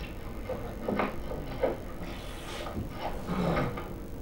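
Quiet stretch of a film soundtrack played over loudspeakers in a room: a few soft knocks and faint movement sounds over a steady hiss.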